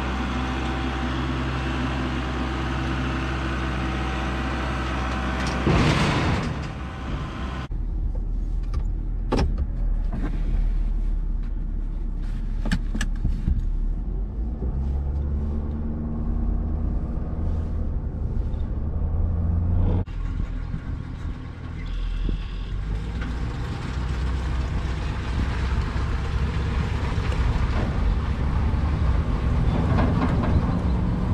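Tractor engine running steadily, then a few sharp knocks, and later the steady drone of a truck driving on the road while towing a loaded trailer.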